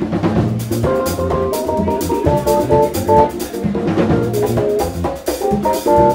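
Live jazz-fusion band playing: a drum kit keeps a busy beat with cymbal hits under piano and keyboard parts, with a run of held melody notes over the top.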